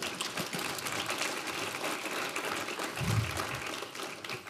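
Audience applauding, a dense patter of many hands clapping, with a low thud about three seconds in.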